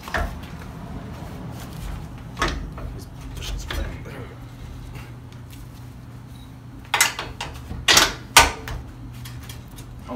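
Metal clanks and knocks from a leaf spring and its shackle being worked into the frame hanger by hand, with scattered knocks early on and a cluster of the loudest clanks about seven to eight and a half seconds in. A low steady hum runs underneath.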